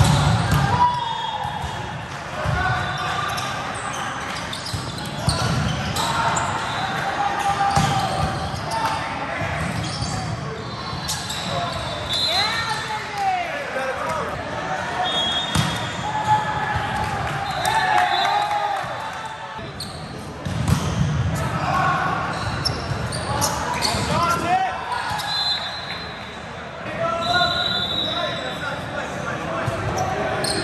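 Indoor volleyball play in a large, echoing hall: the ball being struck and bouncing at intervals, short shoe squeaks on the court, and players' voices calling out across the rallies.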